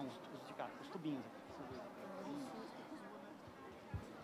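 Faint background voices and room murmur, with a short knock near the end.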